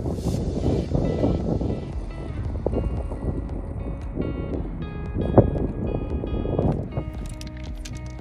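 Wind buffeting the microphone, with background music of held notes fading in about two seconds in and shorter notes near the end.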